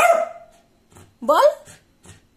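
A Pomeranian barking: one sharp, loud bark right at the start that dies away over about half a second, then a second short call about a second later.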